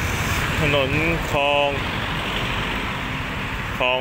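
Steady street traffic noise from vehicle engines, with a man speaking in Thai over it twice.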